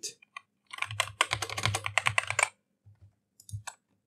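Typing on a computer keyboard: a quick run of keystrokes for about two seconds, then a few scattered keystrokes near the end.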